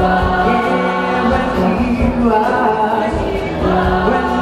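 School choir singing a gospel song together, with a young male soloist singing lead into a microphone over them.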